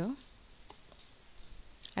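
A couple of faint clicks from a computer keyboard and mouse, about two-thirds of a second in, over quiet room tone.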